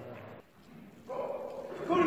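Men's voices calling out in a large, echoing hall. They cut out briefly about half a second in and come back after about a second.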